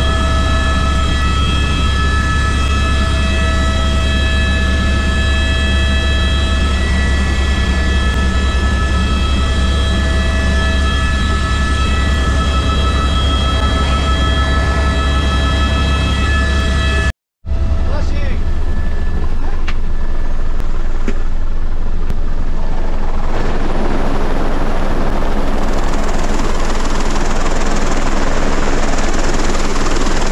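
Helicopter cabin noise: a steady low rotor drone with a high turbine whine over it. A little past halfway the sound cuts out for a moment and returns without the whine. From about two-thirds through, a rising rush of wind joins the drone as the cabin opens to the outside air.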